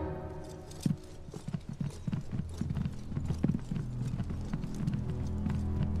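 Footsteps of several people walking briskly across a wooden floor: a patter of many short, overlapping steps starting about a second in, over soft background music.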